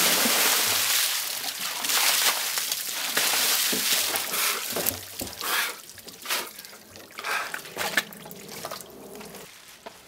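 Ice water pouring out of a large plastic barrel over a person and splashing onto paving stones, a loud rush that fades by about four seconds in. It then tapers into scattered splashes, trickles and drips running off him onto the ground.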